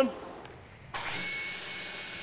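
An electric woodworking machine in a workshop running steadily, its motor noise with a thin high whine over it, starting abruptly about a second in after a short quiet gap.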